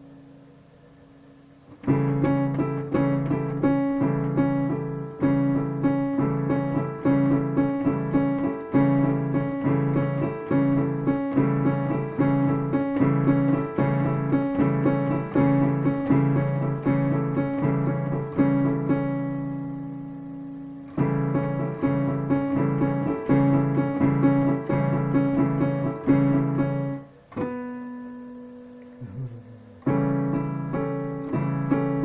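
Digital piano being played: a steady run of chords and notes starts about two seconds in, pauses briefly while a chord rings about two-thirds through, resumes, and stops shortly before the end.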